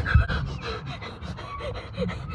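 A girl panting in quick, breathy breaths while being spun fast, with wind rumbling on the phone's microphone, loudest right at the start.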